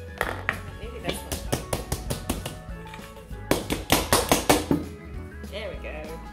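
Quick, rapid taps on an upturned stainless steel mixing bowl, in two runs, loosening a baked cake from the bowl.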